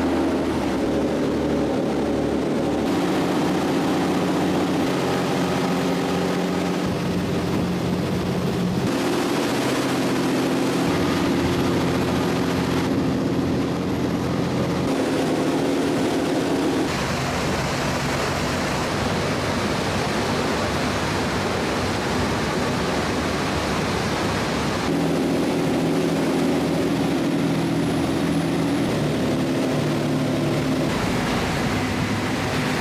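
A ferry's engines running steadily, heard from on board over a rush of water and wind noise. The pitch and loudness of the engine note change abruptly every few seconds.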